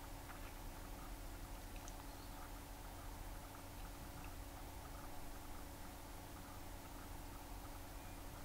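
Faint room tone: a steady low electrical hum with hiss and one or two tiny ticks.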